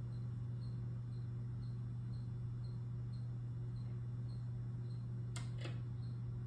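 Steady low electrical hum from the lit pinball machine, with faint regular ticking about four times a second. Two sharp clicks about half a second apart come near the end.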